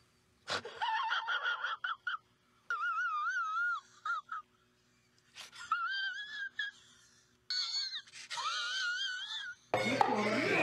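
A man wailing in a high, wavering voice: four drawn-out crying wails with short silences between them, like exaggerated sobbing.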